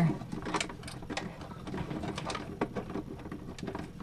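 Navigation-light wire being pushed through a wire feed pipe among other cables: irregular light scraping, rustling and small clicks.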